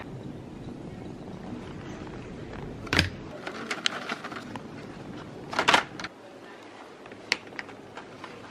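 Shop background noise with scattered clicks, knocks and rustles as small packaged items, a toothpaste tube and toothbrushes, are handled and put into a plastic shopping basket. The loudest knocks come about three seconds in and just before six seconds.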